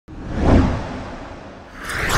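Whoosh sound effects for a logo reveal. A deep, swelling whoosh peaks about half a second in and fades. A second, brighter whoosh rises near the end.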